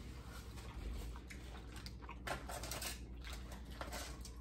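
Quiet eating sounds: chewing, and tacos being handled in foil-lined takeout trays, with a cluster of small crinkles and clicks about two seconds in.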